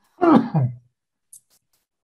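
A person clears their throat once, a short voiced sound that falls in pitch, followed a moment later by a faint short click.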